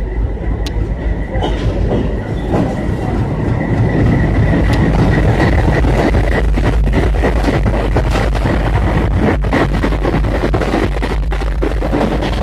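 Two diesel locomotives heading an arriving passenger train pass close by at low speed, their engines running over the rumble of wheels on rail. A faint steady high whine sounds through the first half, and the sound grows louder about four seconds in as the locomotives draw level.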